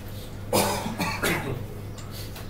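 A person coughing twice, the first about half a second in and the second about a second in, over a steady low electrical hum.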